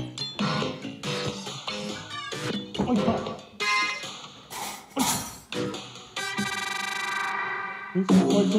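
Live electronic music: a quick run of short plucked and struck sounds, then a held buzzy chord from about six seconds in to just past seven.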